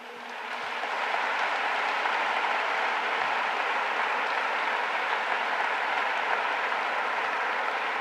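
Audience applauding, swelling over about the first second and then holding steady.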